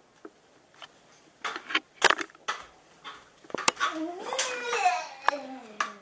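Several sharp clicks and knocks in the first half, then a child's wordless voice for about a second and a half.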